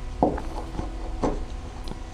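Soft handling sounds of hand spinning: a few light clicks and rustles as yarn is wound by hand onto a wooden drop spindle, over a low room hum.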